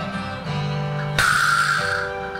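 A vibraslap struck once about a second in, its rattle buzzing for under a second, over guitar-led backing music.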